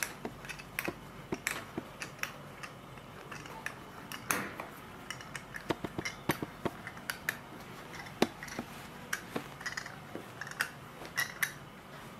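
Irregular light clicks and taps from the metal adjusting rod and wooden halves of a hat stretcher being turned and handled by hand.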